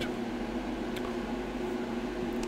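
A steady low mechanical hum, with a faint click about a second in.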